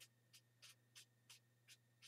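Near silence, with about five faint, brief scratches of a small paintbrush dabbing at wet alcohol ink on paper.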